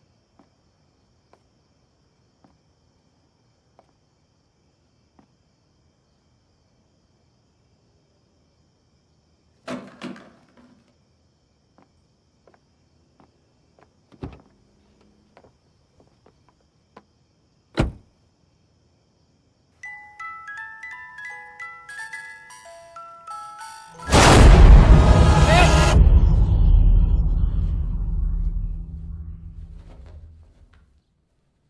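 A few scattered thumps, then about twenty seconds in a music box starts plinking a melody of short high notes. A few seconds later a loud horror-film sting with a deep low rumble cuts in and slowly fades away.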